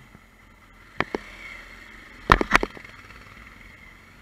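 Motorcycle engine idling quietly at a stop, with a pair of sharp knocks about a second in and a louder cluster of four knocks about halfway through.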